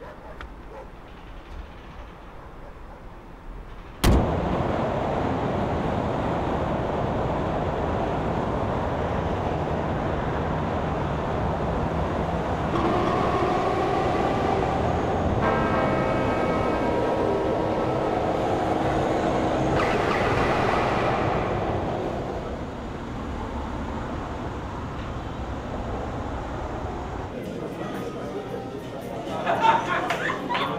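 Busy multi-lane highway traffic: a steady wash of engine and tyre noise that starts abruptly about four seconds in and grows quieter about 22 seconds in. A long horn-like tone sounds over it in the middle.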